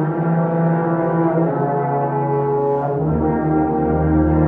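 A brass choir of tubas, euphoniums, French horns, trumpets and trombones playing sustained chords, with a deep bass note coming in about three seconds in.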